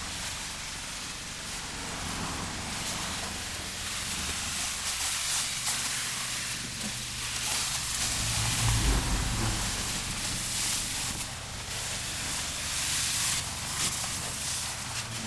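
High-pressure water spraying from a self-serve car wash wand onto a car's bodywork, a steady hiss that rises and falls as the spray is moved. A low thump about two-thirds of the way through is the loudest sound.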